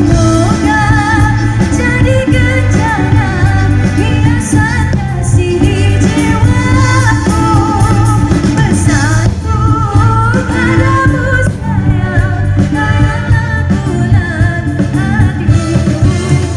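Live band playing a pop song: a sung melody over keyboards, electric guitar and a heavy low end, played through the stage sound system without a break.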